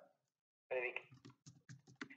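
A quick run of about seven sharp clicks, close together over less than a second, after a short spoken 'sí'.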